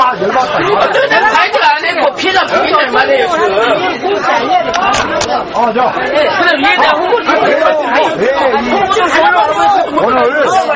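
Several people talking loudly at once in Korean, their voices overlapping in an argument.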